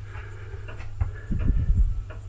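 Steady low electrical hum, with soft low bumps from handling of a handheld camera and thermometer in the second second.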